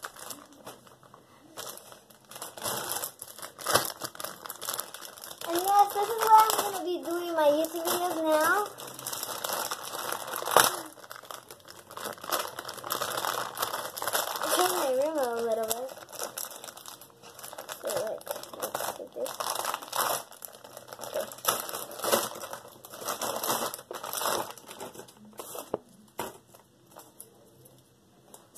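Plastic packaging of a squishy toy crinkling and crackling in quick, irregular bursts as it is pulled open by hand, with one sharper snap partway through.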